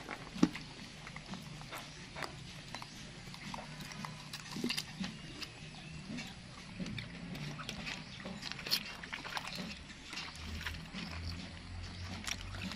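Scattered small clicks and smacks of a young macaque chewing and eating, over a faint steady low hum.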